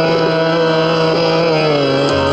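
Khyal singing in Raag Ahir Bhairav: a male voice holds a long note that slides slowly down in pitch, over a steady drone and harmonium accompaniment.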